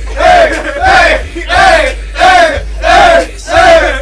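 A group of voices shouting the same short call in rhythm, about six times, evenly spaced, as part of a hip-hop track, with a steady bass line underneath.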